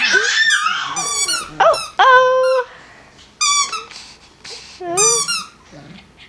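Shetland sheepdog puppy giving short, high-pitched yips and whines, about half a dozen over a few seconds.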